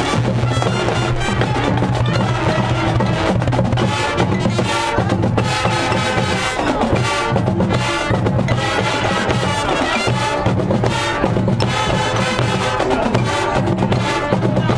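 Marching band playing: brass over marching drums and percussion.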